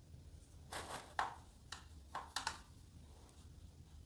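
About five short, quiet strokes of a watercolour brush mixing blue paint in a plastic palette, in two groups around one and two seconds in, over a faint steady low hum.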